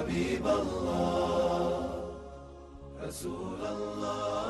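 Chant-like vocal theme music with sustained voices, dipping in level about two seconds in, with a brief whooshing hiss about three seconds in before the voices resume.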